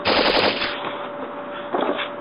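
Machine-gun fire sound effect: a rapid burst of shots lasting under a second, then a short second burst near the end.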